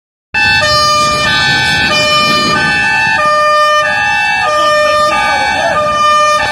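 Two-tone emergency vehicle siren alternating between a high and a low note about every two-thirds of a second. It starts abruptly about a third of a second in.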